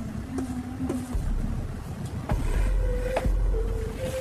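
Background music: a deep bass pulse under held melody notes, which step up in pitch about halfway through, with light percussive taps.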